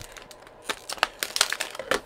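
Plastic water bottle crinkling and crackling in the hands: irregular sharp crackles, thickest in the second half.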